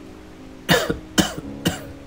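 A man coughing three times in quick succession, a sick man's cough from the flu.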